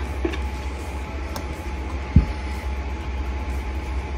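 Steady low hum in the room, with a single soft, low thump about two seconds in and a faint click a little before it.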